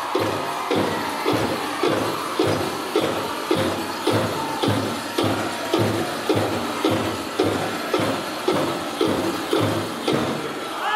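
Powwow drum group singing over a large bass drum struck in a steady beat, about two beats a second.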